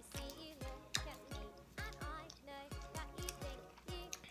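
Background music with a steady beat: a deep kick drum about twice a second under a melody.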